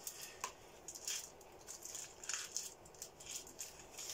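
A string of faint, irregular rustles and light scrapes from a cardboard box of myrrh incense sticks being handled and a stick being drawn out of it.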